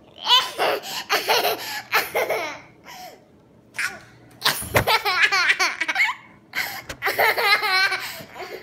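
A toddler laughing hard in several high-pitched bursts, with a short lull about three seconds in.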